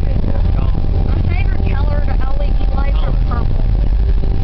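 Steady low rumble of a car driving, heard from inside the cabin, with quiet indistinct voices over it.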